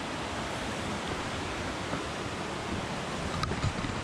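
Steady rush of a fast-flowing, rocky river and its falls.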